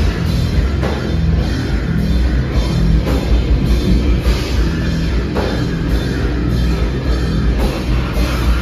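Live rock band playing loudly through a club PA, with heavy bass and drums and a strong accent about once a second.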